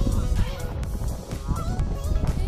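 Geese honking a few times over background music with a steady beat.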